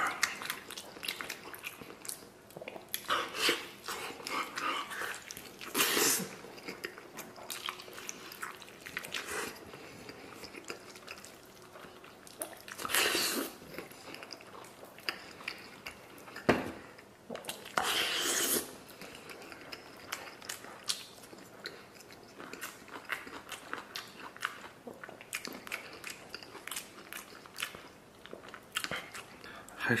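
Close-up eating sounds: a person biting and chewing pork knuckle meat and skin, with wet smacking and many small clicks, and a handful of louder noisy bursts every few seconds.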